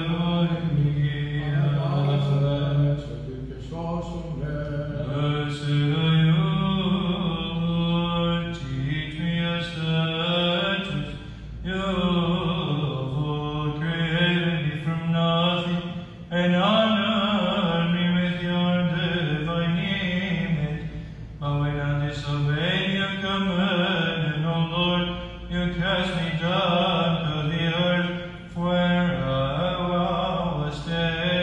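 A male voice chanting Byzantine-style liturgical chant, unaccompanied, in long held notes that bend slowly from pitch to pitch, with brief pauses for breath.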